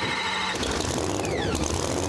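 Supercharged engine of a 1984 Camaro no-prep drag car being started. A steady whine stops about half a second in as the engine catches and runs rough with a low rumble, and two falling whistles come through over it.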